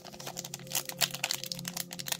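Foil booster-pack wrapper crinkling in many small crackles as fingers work at its crimped top edge to tear it open.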